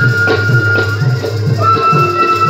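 Instrumental passage of Baul folk music: a flute holding long notes that step between a few pitches, over a steady hand-drum beat of about four strokes a second.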